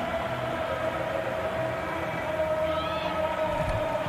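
Steady stadium background ambience: a constant hum over a low noise bed, with no distinct event apart from a faint short sound about three seconds in.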